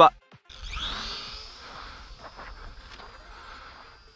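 Small electric motor and propeller of a mini RC warbird whining up in pitch about half a second in, as the throttle is opened, then holding a steady high whine that slowly fades as the plane flies off. Low wind rumble on the microphone underneath.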